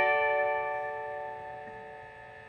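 Electric guitar chord left to ring out, fading steadily with a bell-like sustain and no new notes played.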